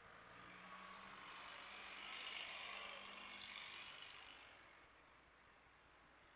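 Near silence: faint hiss on an air-traffic-control radio feed, swelling over the first two or three seconds and fading away by about five seconds in, with no transmission.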